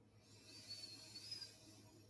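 Near silence, with a faint hiss lasting about a second and a half.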